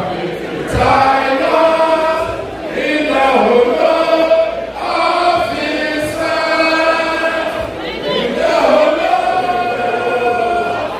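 A crowd of voices singing together in long, held phrases that break off every two to three seconds.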